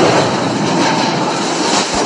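Loud, harsh continuous noise with no clear pitch, easing slightly toward the end.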